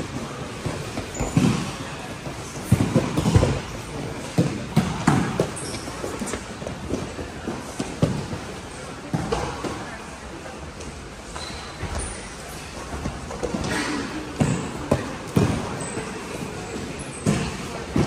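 Wrestling drill across a large gym: irregular thuds of bodies and feet landing on the mats, with scattered voices of the wrestlers in the background.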